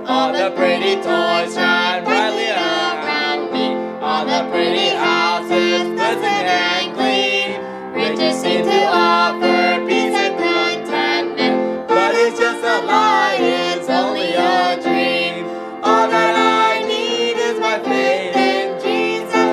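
A man and a woman singing a worship song together over instrumental backing.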